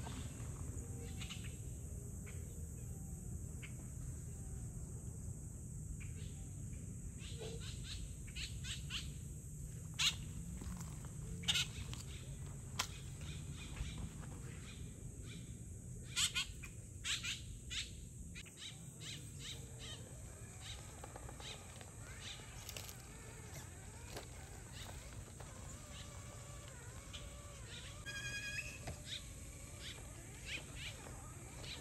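Outdoor ambience with a steady low rumble and scattered short bird chirps, busiest in the middle stretch, with a brief run of quick chirps near the end.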